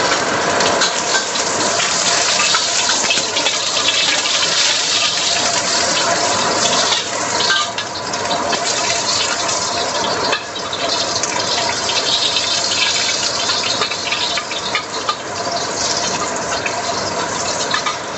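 Sliced ginger sizzling and crackling in hot oil in a wok, with a metal spatula scraping the pan now and then. A range hood fan runs steadily underneath.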